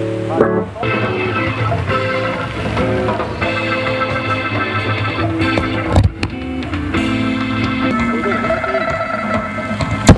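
Live rock band playing on stage: sustained electric guitar chords ringing over drums, with a loud low thump about six seconds in.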